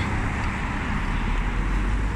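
Steady street noise of road traffic, with a low rumble of wind on the phone microphone.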